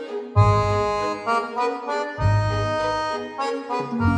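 Accordion music: held melody notes over low bass chords that come in about every two seconds.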